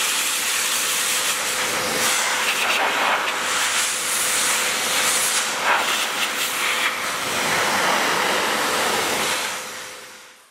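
Steam cleaner nozzle blasting a continuous jet of steam into a car's front grille and fog-light surround: a loud, steady hiss that swells and eases as the nozzle moves. It fades away near the end.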